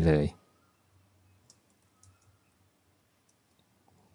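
Faint, sparse keystrokes on a computer keyboard: a few isolated clicks while code is typed.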